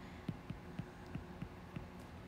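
Faint, irregular taps of a stylus on an iPad's glass screen as a word is handwritten, six or seven light ticks over a faint steady low hum.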